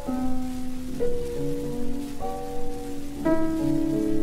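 Solo piano from a 1925 Victor 78 rpm record, playing a slow piece: a new note or chord is struck about once a second and left to ring and fade. A steady hiss and faint crackle of record surface noise run beneath it.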